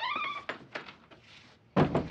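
Wooden door opened by its knob with a short rising squeak and a few clicks of the knob and latch, then shut with a loud thump near the end.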